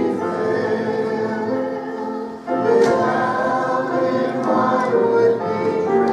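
A congregation singing a hymn together, with held notes and a short break between lines about two and a half seconds in.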